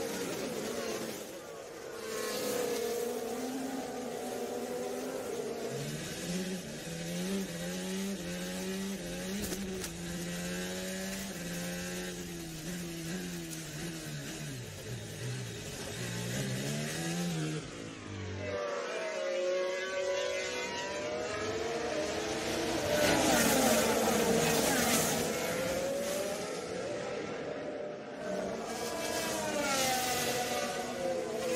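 Formula One cars' turbocharged V6 hybrid engines at racing speed, their pitch climbing and dropping through gear changes and as cars pass. For a long stretch in the middle one engine's note dominates, as heard from onboard, before an abrupt cut back to several cars.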